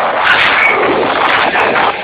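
Loud live rock band playing, heavily distorted by an overloaded camera microphone, with a brief dip in level at the end.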